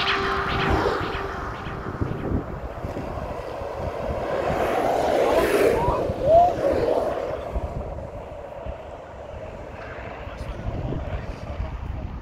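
A held musical note dies away over the first two seconds. After it comes an outdoor rushing noise with indistinct voices, swelling for a few seconds in the middle and then fading.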